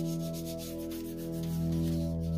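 A cloth rag rubbed over a paint-covered print in quick back-and-forth strokes, over sustained, droning background music.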